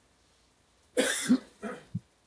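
A cough about a second in, followed by a softer second cough.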